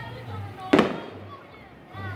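An aerial firework shell bursting: one sharp bang about three quarters of a second in, fading quickly.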